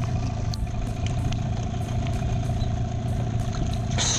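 Dinghy outboard motor idling steadily, a low continuous hum with a steady tone above it.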